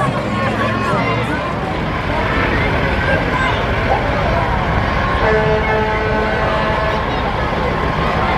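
Heavy semi tow truck's diesel engine running low as it rolls slowly past close by, coming in about a second and a half in, with crowd voices around it.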